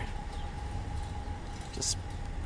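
A car engine idling, a steady low rumble, with a faint steady high whine over it.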